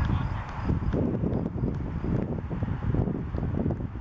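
Wind buffeting the microphone in an irregular low rumble, with faint indistinct voices.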